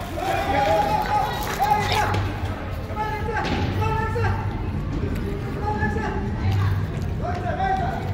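Voices of spectators and children calling and shouting across a large gym, several overlapping held calls, over a low steady hum.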